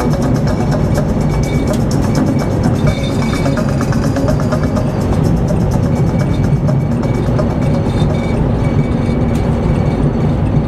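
Radio music with a steady beat playing in a moving car, over the car's road noise.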